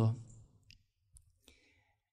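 A man's spoken word trails off, then a pause in which three faint, short clicks sound about half a second apart.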